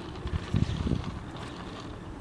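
Wind buffeting a hand-held phone's microphone in low, uneven gusts, the strongest about half a second and a second in, over a faint steady background.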